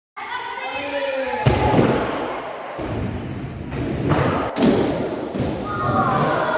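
A skateboard drops into a ramp with a sharp thud about a second and a half in, then its wheels rumble steadily over the ramp and floor, with a couple more knocks from the board later on.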